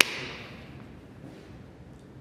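A single sharp hit at the very start with a hissing tail that fades within about half a second, followed by faint steady background noise.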